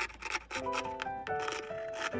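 Cloth rubbing and rustling as hands handle and trim the edge of cotton fabric with scissors, under background music that comes in about half a second in.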